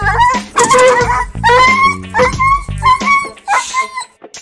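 A dog yelping repeatedly in short, high-pitched cries, several rising in pitch, with one longer cry about half a second in. Background music with a steady bass line plays underneath.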